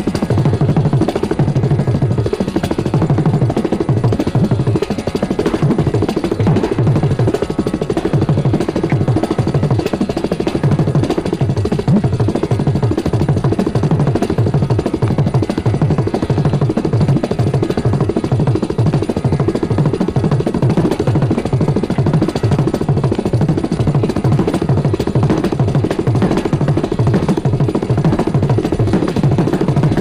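Carnatic percussion, a mridangam, playing a fast, dense run of low strokes over a steady drone.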